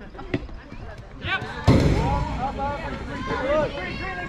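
Softball bat striking a pitched ball with a sharp, loud crack a little before the midpoint, followed by spectators shouting and cheering.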